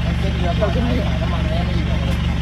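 A steady low engine hum, like an idling vehicle engine, running without change under a woman's speech.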